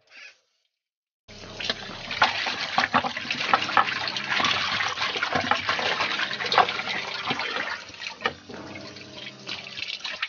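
Water pouring and splashing into a metal wok, starting about a second in and running steadily with a busy patter of splashes.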